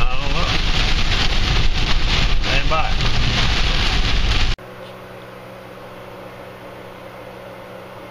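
Heavy rain pelting a car's windshield and roof, heard from inside the moving car along with low road rumble. About four and a half seconds in it cuts off suddenly to a quiet room with a steady low hum.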